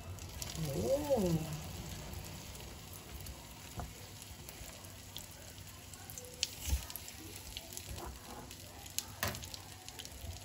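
Egg-dipped slices of tikoy (sticky rice cake) sizzling steadily in hot oil in a frying pan, with a few sharp clicks of metal tongs against the dish late on.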